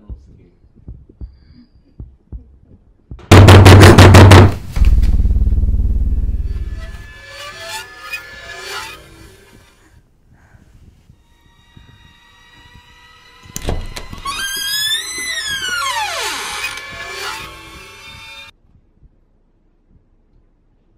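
Horror-film soundtrack: a very loud crashing hit about three seconds in, fading into a low rumble. About ten seconds later a second hit is followed by eerie pitched tones sliding downward, and the sound cuts off suddenly a second and a half before the end.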